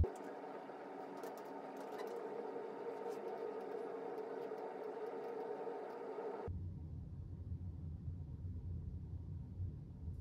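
Light computer-keyboard typing clicks over a steady room hum with faint held tones. About six and a half seconds in, the hum gives way abruptly to a plain low rumble.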